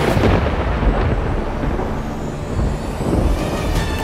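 Dramatic soundtrack sting for a shock reveal: a loud, deep rumbling boom that carries on and slowly eases, with sharp percussive hits coming in about three seconds in.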